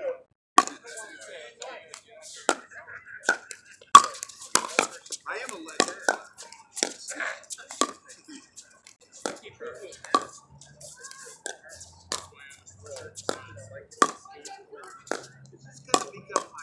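Pickleball paddles striking a plastic ball in a rally: a string of sharp pocks, roughly one every half second to a second, the loudest about four seconds in. Faint voices come between the hits.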